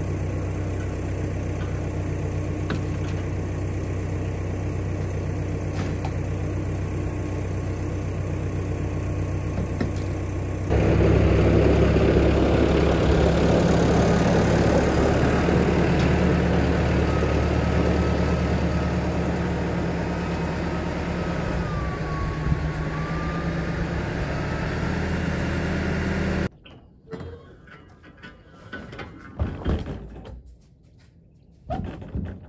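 Massey Ferguson loader tractor's diesel engine running steadily, then louder from about a third of the way in as the tractor is driven into the garage. The engine sound cuts off suddenly near the end, followed by a few faint knocks.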